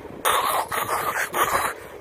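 A man making a few hissing, scraping noises with his mouth, imitating the sound of a car running on a bare metal wheel rim with no tyre.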